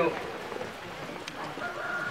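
A rooster crowing, a drawn-out call that starts about one and a half seconds in, over faint background voices.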